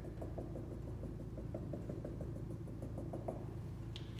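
Dry-erase marker tapping out short dashes on a whiteboard, a quick run of light ticks at about five a second.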